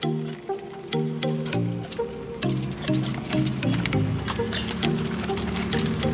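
Background music: a melody of short, separate notes stepping up and down, with scattered faint clicks.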